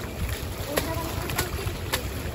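Water splashing and churning as a dense crowd of goldfish jostle and feed at the pond surface, with a few sharp slaps of water about three times.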